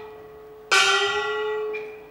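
Kunqu opera stage percussion: one stroke on a ringing metal percussion instrument about two-thirds of a second in, ringing out and fading over about a second, over a held steady tone.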